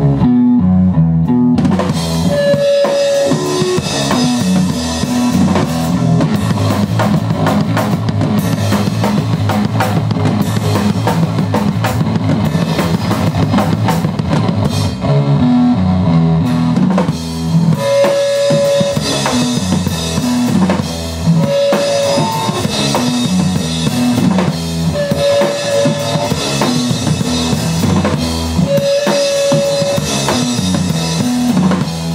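A live drum kit and electric guitar play loud instrumental rock. The drums come in about half a second in over a held guitar note, then kit and a repeating low riff drive on together.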